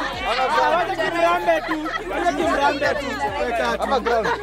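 A group of people chattering and laughing, several voices talking over one another at once.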